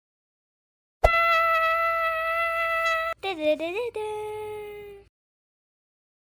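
A person's voice vocalizing without words: a long held high note, a short wavering glide, then a lower held note that fades away.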